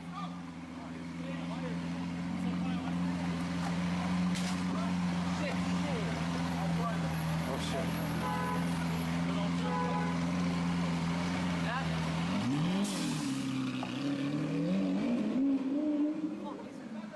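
Sports car engine idling steadily. About twelve seconds in it revs, its pitch climbing in swings as the car pulls away.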